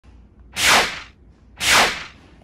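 Two whoosh sound effects, each a swish of about half a second, a second apart.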